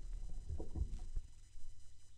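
A 45 rpm vinyl single on a turntable at the end of its track: the music has faded out, leaving low rumble and record surface noise. There are a few soft low thumps in the first half, and the sound dies away near the end.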